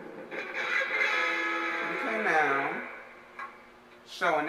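Electric guitar playing held notes from the film's soundtrack, with a note that swoops down in pitch and back up about two seconds in, then dies away.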